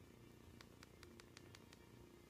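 Faint clicks of the Coby Kyros MID1042 tablet's hardware volume-down button, pressed about seven times in quick succession to step down a menu, over a quiet background hum.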